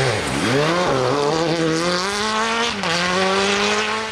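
Peugeot 208 rally car's engine at full effort on a gravel stage, with the hiss of gravel and tyres under it. The engine note drops briefly near the start and climbs again, holds high, then drops once more just before the end and picks up: lifts or gear changes between pulls.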